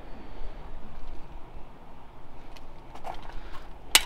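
Low steady outdoor background rumble, with a few faint clicks and one sharp click near the end.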